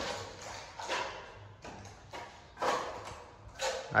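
Steel trowel spreading wall putty over plastered masonry, a series of short scraping strokes about one every half second to second.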